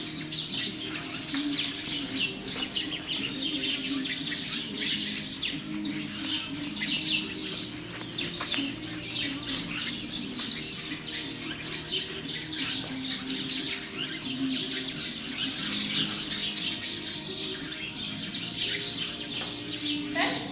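Many small birds chirping continuously in overlapping short calls, over a steady low hum.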